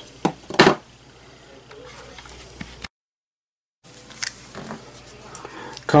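Two light knocks as a small component is set down on a wooden workbench, followed by faint handling sounds of parts and a plastic bag. About a second of dead silence from an edit breaks this near the middle.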